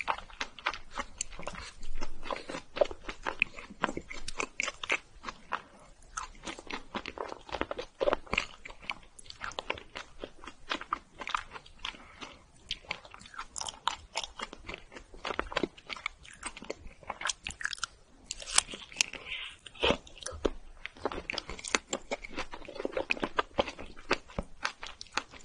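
A person chewing strawberry mochi (a soft rice cake wrapped around a whole strawberry) close to the microphone. Irregular wet clicks and smacks of the mouth run throughout.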